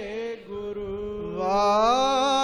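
A man's voice chanting a devotional verse in long held, wavering notes. The chanting grows louder and rises in pitch about one and a half seconds in.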